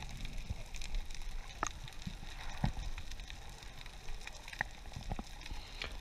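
Underwater sound picked up by a camera in its housing on a reef dive: a steady faint hiss with a few scattered sharp clicks and taps.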